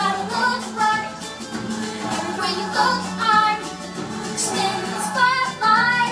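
A song with a woman singing a melody over backing music.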